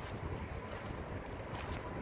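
Wind buffeting the microphone: a steady low rumble, with a faint thin tone held steady above it.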